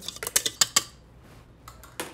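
A utensil stirring whipped cream in a stainless steel bowl, with several quick clicks and scrapes against the metal in the first second, then quieter.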